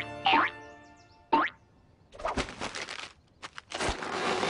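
Cartoon sound effects: two quick rising pitch glides, one right at the start and one about a second and a half in. A rustling noise follows in the second half, with a few sharp clicks near the end.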